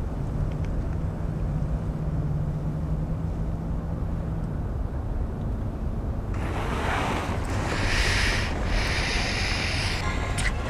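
Steady low rumble of a car's interior with traffic outside. A faint low hum runs for the first few seconds, and from about six seconds in a louder hiss comes in, breaking briefly near the end.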